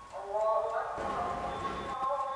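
A sustained droning chord, with a short wavering voice-like sound and a rush of noise over it in the middle.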